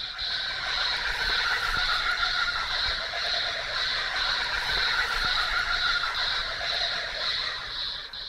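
Bush ambience: a steady, high-pitched insect chorus pulsing about twice a second, with fainter calls lower down. It fades out near the end.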